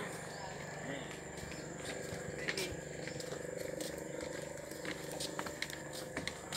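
Faint voices in the background with a few scattered knocks of footsteps on wooden boardwalk planks.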